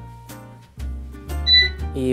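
An air fryer's control panel gives a short electronic beep about one and a half seconds in as its timer is set. A low hum and soft background music run under it.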